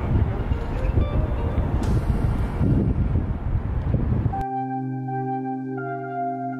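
Outdoor background noise with a heavy low rumble, which cuts off suddenly about four seconds in. Ambient music of sustained, bell-like tones, like a singing bowl, takes over.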